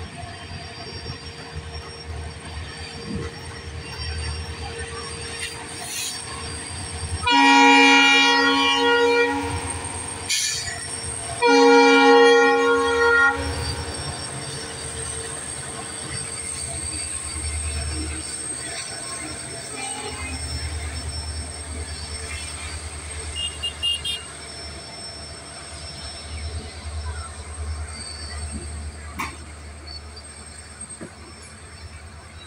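Diesel locomotive horn sounding two long blasts, the first about seven seconds in and the second about four seconds later. Between and after them is the steady rumble of a long container freight train rolling past on the rails.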